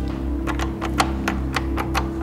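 A door lock being worked by hand at the cylinder below a lever handle: a run of about eight sharp metallic clicks, uneven in spacing. A steady low music bed plays underneath.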